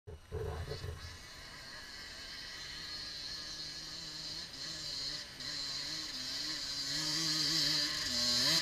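A dirt bike engine approaching from a distance, revving unevenly as it climbs, its sound wavering in pitch and growing steadily louder. A short rustle or thump comes in the first second.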